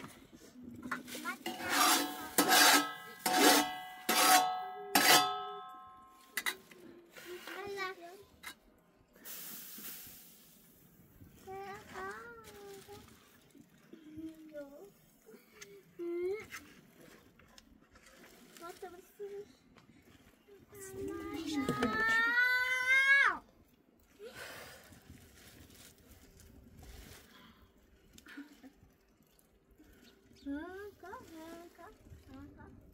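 A young child's voice: several loud calls in the first few seconds, then scattered babbling, and one long rising cry a little past the twenty-second mark. A brief hiss sounds about nine seconds in.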